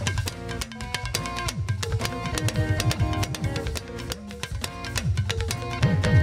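Yoruba hourglass talking drum struck rapidly with a curved stick, its low notes swooping up and down in pitch as the player squeezes the tension cords. It is played over a band backing with sustained melodic notes.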